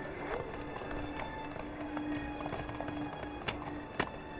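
Quiet film-score background music: a held low note that comes and goes, with scattered light taps.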